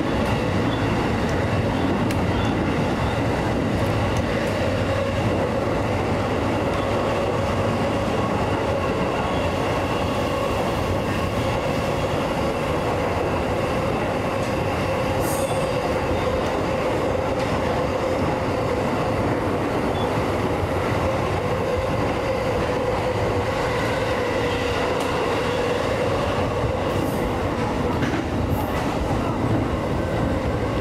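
JR East E233 series electric train running at speed through a tunnel, heard from the leading cab: a steady rail and running roar with a constant tone in the hum, and a few faint clicks.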